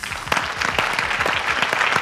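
Audience applause: many hands clapping in a dense, steady patter, greeting a correct answer.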